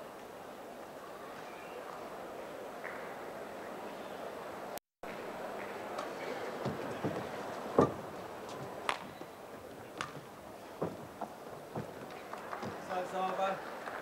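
Badminton rally: a run of sharp racket-on-shuttlecock hits about a second apart, starting about six seconds in, over the steady murmur of an indoor arena crowd. The sound drops out for an instant about five seconds in.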